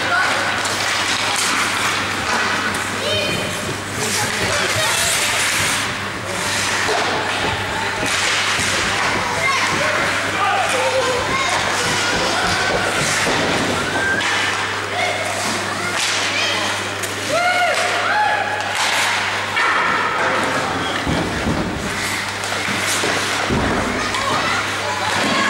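Ice hockey play echoing around an indoor rink: skates scraping on the ice, and sticks and the puck clacking and knocking, with scattered shouts from players and onlookers over a steady low hum.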